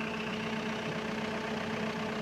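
Diesel engine of a Case 321D compact wheel loader idling steadily, a constant even hum.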